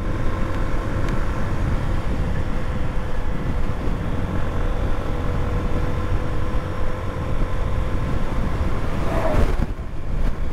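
Honda CB125F's single-cylinder 125 cc engine running steadily at cruising speed, mixed with wind and road noise, with a brief change in the sound near the end.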